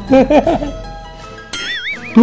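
A goat bleating once, a short call with a wavering pitch, over background music. Near the end comes a warbling, whistle-like comic sound effect.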